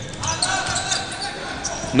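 Basketball bouncing on an indoor court during live play, with the reverberant background noise of the sports hall.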